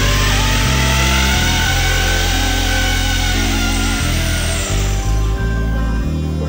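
Background music with steady bass notes and a wavering melody, over the noise of a corded electric drill boring into a wall. The drill fades out about five seconds in.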